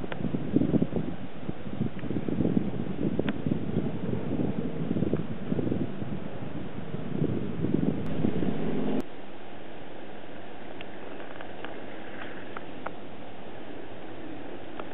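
Wind buffeting the microphone in uneven gusts. It cuts off suddenly about nine seconds in, leaving a quieter steady outdoor background with a few faint ticks.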